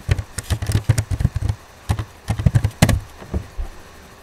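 Computer keyboard keys clicking in an irregular run of typing, a couple of dozen sharp clicks over about three and a half seconds.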